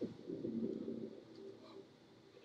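A man's drawn-out low groan, held at a steady pitch for about a second and a half before trailing off.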